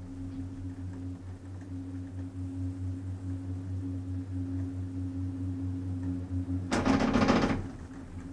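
Chair of a Doppelmayr 6/8-CGD/B combined chairlift-gondola passing over a lift tower's sheave train: a rapid clatter of rollers lasting just under a second, near the end. Under it runs a steady low hum.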